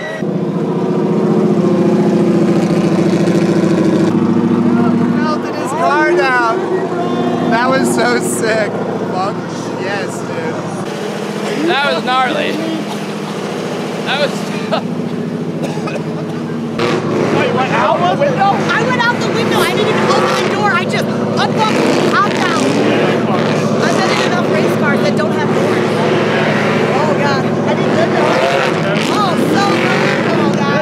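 A vehicle engine running steadily, its note shifting a few times, with people shouting and cheering over it.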